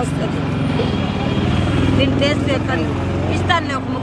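A motor vehicle's engine running close by with a steady low hum that fades near the end, mixed with voices talking.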